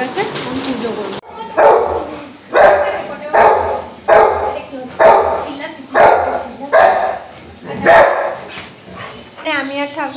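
Black Labrador barking in play, about eight loud barks roughly a second apart.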